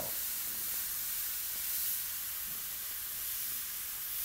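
Airbrush spraying paint: a steady, even hiss of compressed air.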